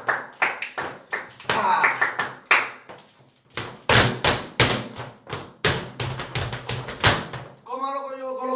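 Flamenco footwork on a hard floor: quick heel taps and full-foot stamps (media tacón and golpe) in a bulerías step. There is a brief pause about three seconds in, then a run of heavier stamps.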